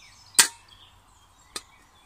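Stainless steel mess kit parts knocking together as the plate is fitted back onto the pan: one sharp metallic clack about half a second in, then a lighter click near the end.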